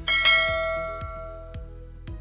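A bell-like chime is struck once and its tones ring out and fade over about a second and a half. Soft outro music runs under it with a light tick about twice a second.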